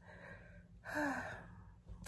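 A woman breathing out audibly: a faint breath near the start, then one short breathy sigh about a second in.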